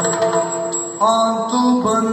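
Yakshagana bhagavata singing in the background ensemble: an ornamented vocal line that enters about a second in and slides in pitch, over a steady held drone.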